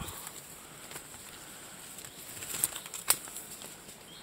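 Leaves and branches rustling and brushing past as someone pushes through woodland undergrowth, with a sharp click about three seconds in.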